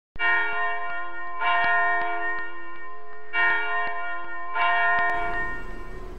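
A bell struck four times in two pairs, each stroke ringing on with several steady tones. The ringing cuts off suddenly about five seconds in, leaving faint hiss.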